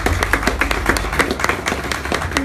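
A small audience clapping, the separate claps distinct and irregular, over a low steady hum.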